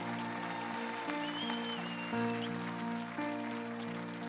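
Keyboard accompaniment of a slow ballad, playing held chords that change three times, with no singing.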